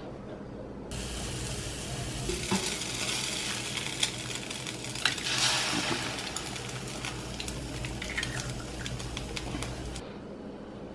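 Food sizzling in a frying pan, starting suddenly about a second in, with scattered clicks and clinks of utensils.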